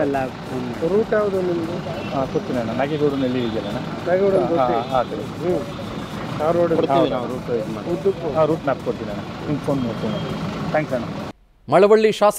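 Two men talking in Kannada over steady background noise. Near the end the sound cuts to a brief silence, then another man starts speaking clearly.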